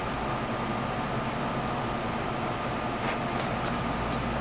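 Steady room hum of a running appliance, with a faint thin whine over a low drone. A few soft ticks come about three seconds in.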